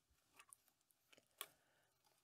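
Near silence, with a few faint short ticks and rustles, the clearest about one and a half seconds in, as hands press canna rhizomes into potting mix in a plastic tray.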